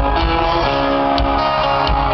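Live country-rock band playing loud through an arena sound system: guitars holding and changing chords over a steady low drum beat, with no singing.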